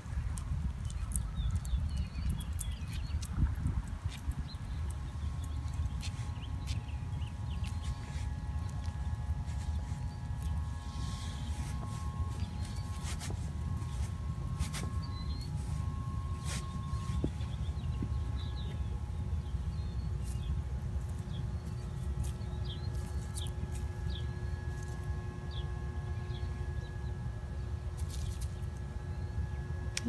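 Very quiet park ambience: a steady low rumble with scattered short bird chirps and light footsteps and rustling through grass and leaves. A faint steady hum comes in about ten seconds in.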